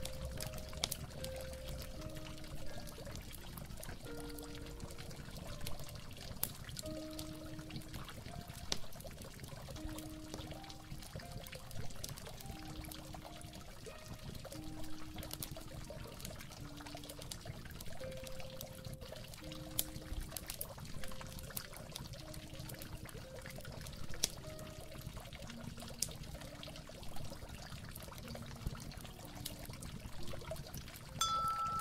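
Water trickling and pouring steadily under a slow, mellow harp melody of single notes, about one a second.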